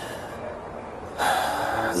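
A person's audible intake of breath, lasting just under a second, starting a little past halfway. It is the kind of breath taken before speaking.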